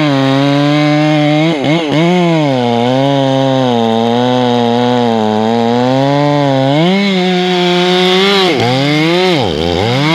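Ported Stihl 461 chainsaw with a 28-inch bar running at high revs, cutting through a tamarack log. For the first seven seconds the engine note runs lower and wavers under load. It then rises to a higher, steady pitch and drops sharply twice near the end.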